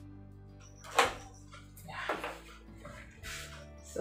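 Background music, with a sharp knock about a second in and a few scraping and knocking handling noises from a plastic bucket being worked with a wooden stick.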